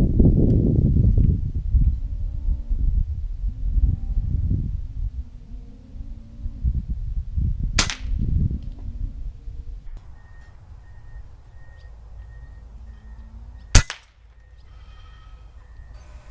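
Two shots from a .25-calibre Umarex Gauntlet PCP air rifle, each a sharp crack: one about eight seconds in and a louder one near the end. A low rumble fills the first half.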